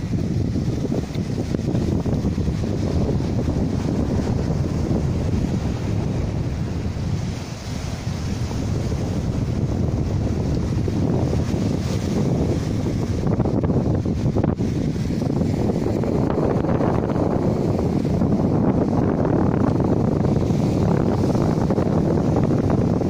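Wind buffeting the microphone over small sea waves washing against shoreline rocks, a steady low rushing noise that dips briefly about a third of the way in.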